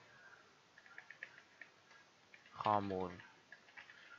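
Faint computer keyboard typing: a scatter of light key clicks, most of them in the first half.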